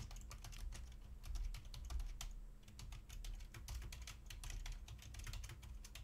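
Computer keyboard typing: a long run of quick, fairly faint keystrokes over a steady low hum.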